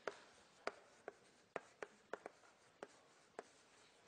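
Chalk writing on a blackboard: faint, short, sharp taps and scratches as the chalk strikes and drags across the board, about ten at irregular intervals.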